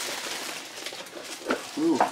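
Packaging rustling and crinkling as a wrapped item is lifted out of a cardboard box, a steady papery noise with a small click near the end.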